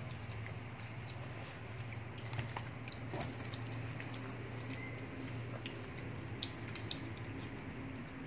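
Soft, scattered small clicks and squishes of gummy candies being handled and chewed, over a steady low hum.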